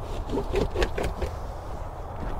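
Rubber trunk cargo liner being lifted and pulled out of a car's boot: a few short scrapes and knocks in the first second, over a low steady rumble.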